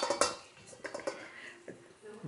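Two sharp clinks of kitchen utensils against a stainless steel mixing bowl right at the start, followed by a few lighter clicks and taps as utensils are handled.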